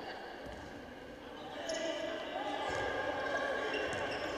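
Basketball arena ambience during a game: a low background of faint voices and court noise in a large hall, getting a little louder after about a second and a half.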